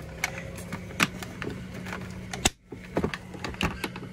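Scattered clicks and knocks of a small battery pack and its wiring being handled and lifted out of a plastic kayak's front hatch, the sharpest click about two and a half seconds in, over a faint steady hum.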